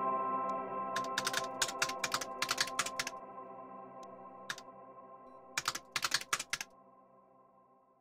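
Two bursts of rapid computer-keyboard typing clicks, one about a second in and one near six seconds, over a held ambient music chord that fades away toward the end.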